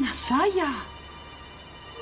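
A woman's short, emotional exclamation in Spanish ("¡Era cierto!") in the first second, over a steady held note of background music.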